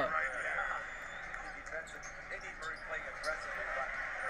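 NBA game broadcast audio playing quietly: a TV commentator talking over arena crowd noise, with faint ball bounces on the hardwood.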